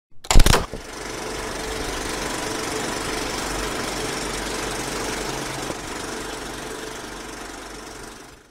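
Logo-intro sound effect: a loud hit about half a second in, then a steady mechanical whirring clatter with a faint steady hum, fading out near the end.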